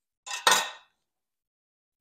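A metal bench scraper set down on a countertop: a short clatter about half a second in.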